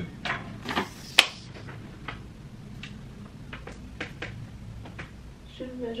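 Scattered light clicks and knocks of hands handling things on a wooden cabinet, with one sharper click about a second in.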